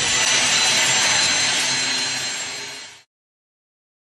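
A steady rushing whoosh like a jet, with faint high steady tones in it, that swells in and fades out about three seconds in: a sound effect under the animated logo.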